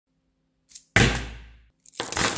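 A quick whoosh, then a sudden loud hit about a second in that dies away over most of a second over a deep low rumble that cuts off abruptly, like an added intro sound effect. Just before the end, a clatter of small steel rod magnets falling onto a pile begins.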